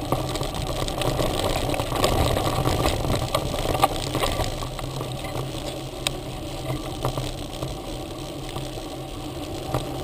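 Mountain bike riding over a dirt trail: a steady rumbling noise from the knobby front tyre and the jostling bike and handlebar camera, with a few sharp clicks and knocks, the loudest about four seconds in.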